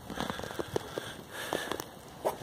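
Faint, irregular clicks and taps of handling and movement noise, from a handheld phone being carried as someone steps out of a van.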